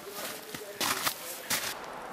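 A few footsteps in snow and undergrowth as a person walks along the line.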